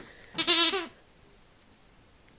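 The squeaker inside a fabric dog frisbee squeaks once, for about half a second with a wavering pitch, as a puppy bites down on the toy.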